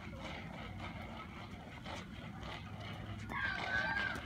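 Steady low outdoor rumble with faint scuffs, and a high-pitched voice sounding briefly near the end.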